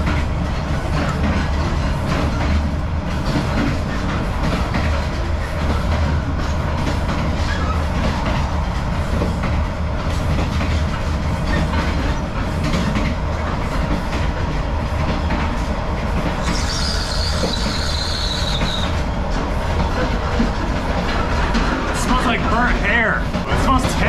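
Passenger train carriage in motion: a steady low rumble and rattle, with many small clicks. A high, slightly falling squeal lasts about two seconds near the end.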